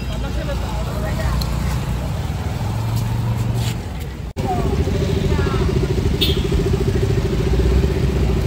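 A road vehicle's engine running with a steady low rumble, with faint voices over it. After a sudden cut about four seconds in, a steady droning tone sits over the rumble.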